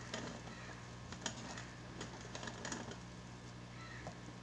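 A few light, irregular clicks and taps over a steady low hum.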